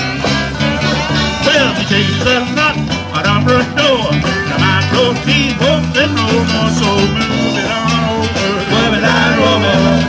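Live band playing: accordion, saxophone, electric and acoustic guitars, bass guitar and drums together, over a steady repeating bass line.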